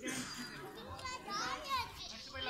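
Many children's voices chattering and calling out at once, several high-pitched voices overlapping with no single speaker standing out.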